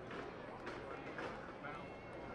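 Ballpark crowd murmur: many spectators chattering at once, with a few short sharp sounds in the middle.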